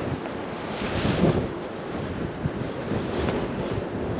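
Strong wind buffeting the microphone in uneven gusts, with a stronger gust about a second in.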